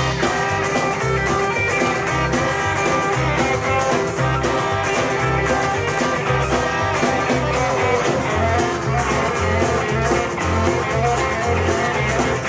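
Live gypsy-blues rock-and-roll band playing on stage: guitars, horns and drums over a steady beat.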